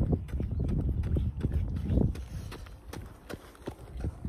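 Running footsteps on an asphalt path: a steady rhythm of shoe strikes with low thuds, loudest as the runner passes close by about two seconds in, then fading as he moves away.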